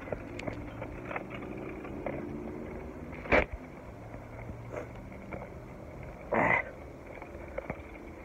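Handling noise and faint rustle from a hand-held phone while someone walks a bicycle over rough ground, with a sharp knock about three seconds in and a short noisy burst a little past six seconds.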